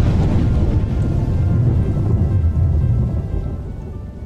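A deep, rolling thunder-rumble sound effect under title music, dying away over the last second or so.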